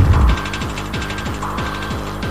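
Free-party tekno/acid dance music: the heavy kick drum drops out about a third of a second in, and the beat carries on thinner as a fast run of falling-pitch blips under a dense, mechanical-sounding ticking texture.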